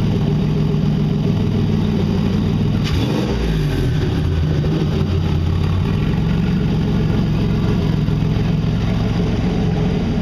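Freshly swapped, turbocharged Nissan VQ35HR 3.5-litre V6 idling steadily on its first start. About three seconds in there is a click, and the engine note shifts for a couple of seconds before settling back to a smooth idle.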